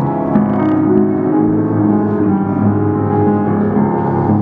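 Upright piano played solo, chords and notes ringing on into one another.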